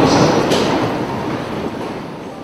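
A congregation sitting down together in wooden church pews: a broad rumble of shuffling, rustling and seat noises that fades away, with one sharp knock about half a second in.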